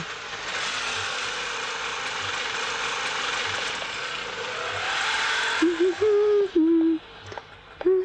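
A steady rushing noise that cuts off abruptly about five and a half seconds in, followed by a held melodic tone stepping between a few notes, like background music in the film's soundtrack.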